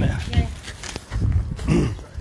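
Indistinct human voice sounds with no clear words, including a short vocal sound that rises and falls in pitch near the end, over low background rumble.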